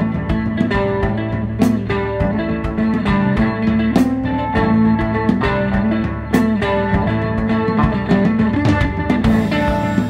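Live band instrumental break: mandolin picking a melody over a drum kit and electric bass, with no vocals.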